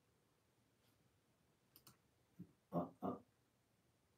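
Near silence with a couple of faint clicks a little under two seconds in, then a man's two short murmured vocal sounds near the end.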